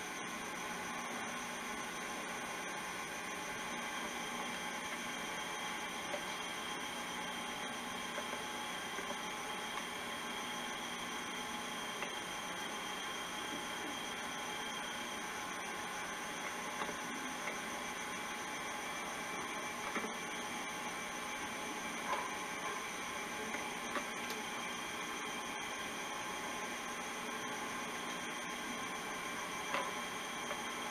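Steady low hiss with a faint, constant high-pitched whine and a few faint ticks; no speech.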